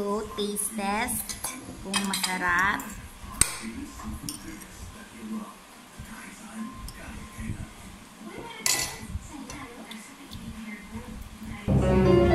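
Metal knife and fork clinking and scraping on a ceramic plate while cutting roast chicken. Sharp clinks come in quick succession in the first few seconds, with one more clear clink near the ninth second. Music cuts in loudly at the very end.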